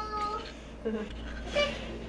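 A young child's high-pitched wordless vocalizing: a drawn-out note at the start, then a couple of short sounds.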